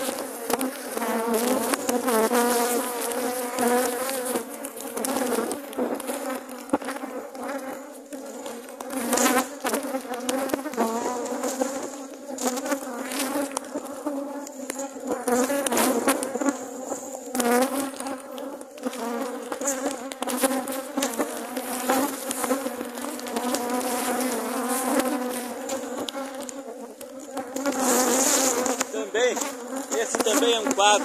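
Many honeybees buzzing in a steady, low hum around an opened hive with the colony stirred up. Scattered clicks and knocks sound through it.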